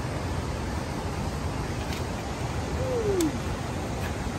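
Fast river current rushing steadily over rocks, with a brief falling tone a little after the midpoint.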